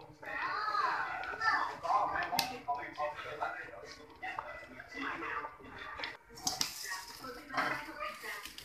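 Indistinct voices talking, with a sharp knock about two and a half seconds in and a burst of hiss near the end.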